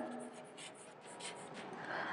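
Faint scratching of chalk writing a word on a chalkboard.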